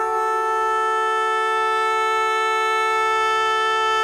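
Background music: a solo wind instrument holding one long, steady note.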